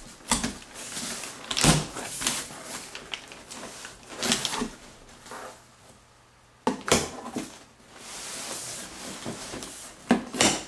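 Large corrugated cardboard shipping box being opened by hand: the flaps scrape and knock as they are pulled apart. Near the end, the crumpled kraft packing paper inside makes a longer, softer rustle.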